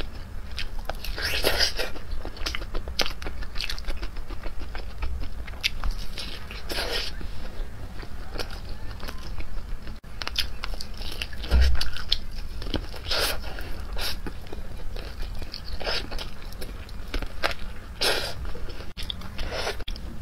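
Close-miked biting and chewing of a sauce-coated chicken drumstick: irregular bites and wet chewing sounds, with an occasional crunch.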